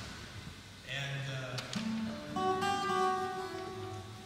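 Cutaway acoustic guitar played fingerstyle: single plucked notes, then a bass note and a chord that build up and ring on together in the second half.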